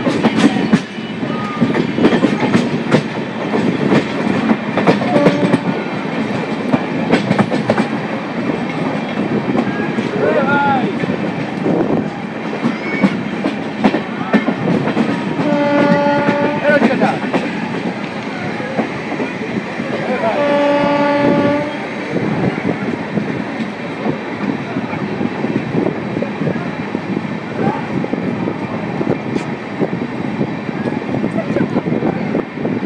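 An Amrit Bharat Express coach running at speed, its wheels clattering over rail joints and points. A train horn sounds twice about halfway through, two blasts each well over a second long, about five seconds apart.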